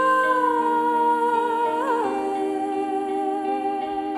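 A woman's voice holding a long wordless sung note over sustained piano chords, wavering briefly and then stepping down to a lower held note about halfway through.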